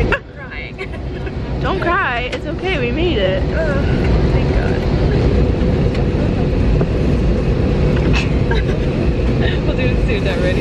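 Steady hum of an airliner cabin, the aircraft's air system and engines, which dips sharply at the start and builds back over the first two seconds. Near two seconds in, a high, wavering voice cuts through briefly.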